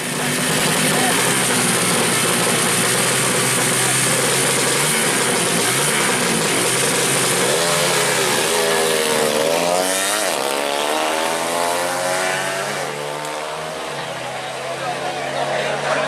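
Four-stroke 120cc underbone drag-racing motorcycle engine revving hard at the start line, loud and continuous. The revs rise and fall repeatedly for a few seconds near the middle.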